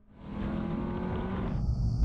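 Sports car engine accelerating hard in a drag race, its note rising slowly through the revs. Near the end the sound changes to a hiss with a deep rumble.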